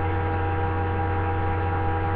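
Steady electrical mains hum: an unchanging buzz with many evenly spaced overtones, picked up on a webcam microphone's recording.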